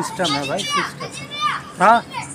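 Children's voices calling out: several short, high calls, the loudest near the end.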